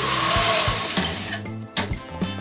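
Metal window louvers being opened: a sliding rush of noise for about the first second, then a few sharp clicks about one and a half seconds in.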